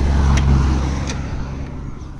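A Nissan Micra's door being opened: two short clicks from the handle and latch, under a low rumble that fades over the two seconds.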